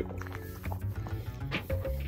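Toy poodle eating fast from a bowl: quick chewing and lapping with small irregular clicks, over steady background music.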